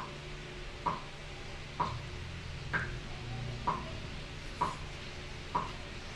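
Evenly spaced ticks, a little faster than one a second, over a low steady drone.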